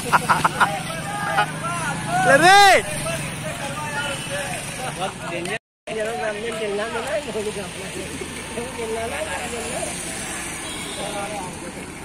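Men shouting and chattering by the roadside over passing motorcycle and road traffic, with one loud shout about two and a half seconds in. The sound cuts out for a split second around the middle.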